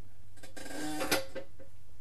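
Stove door being worked as a sound effect: a ringing metallic scrape from about half a second in, ending in a sharp metallic clack a little after a second, over a steady low hum.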